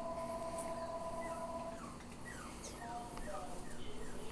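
A small dog, a Yorkshire terrier, whining: a long steady high whine, then a series of short falling whimpers and squeaks.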